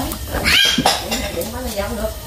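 Quiet voices murmuring, with a short high-pitched rising call about half a second in.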